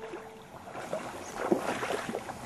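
Stream water running and gurgling, louder from about a second in.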